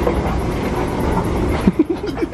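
Escalator running with a steady low mechanical rumble. Near the end, a quick run of short rising pitched sounds starts, about six a second.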